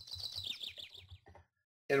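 A bird's call: a quick run of about eight falling chirps lasting about a second, faint beside the speech around it.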